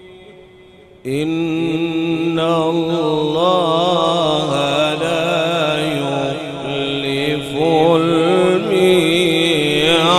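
A man's voice reciting the Quran in melodic qirat style. It comes in abruptly about a second in and holds long lines whose pitch wavers through ornamented turns.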